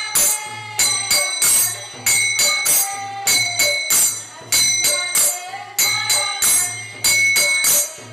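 Small brass hand cymbals (kartals) struck together in a steady kirtan rhythm, about three strokes a second, each stroke ringing on. A low beat sounds underneath.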